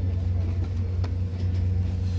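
A steady low mechanical hum, like an engine or generator running, under faint background voices of a market crowd.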